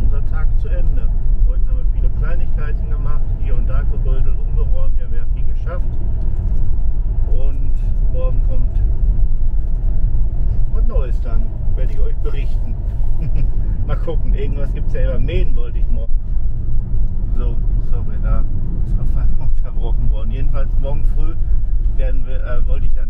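Car driving, heard from inside the cabin: a steady low rumble of engine and road noise, with indistinct voices talking over it on and off.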